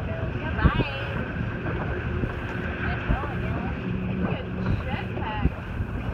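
Steady low rumble of a boat running on choppy water, with water noise and wind buffeting the microphone.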